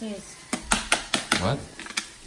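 Plastic food containers and their snap-on lids clacking against each other and the counter while lunch is packed: a quick run of sharp clicks and knocks lasting about a second.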